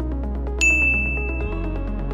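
A single bell-like ding about half a second in, ringing out and fading over about a second above steady electronic backing music. It is the interval timer's chime marking the switch from rest to the next work round.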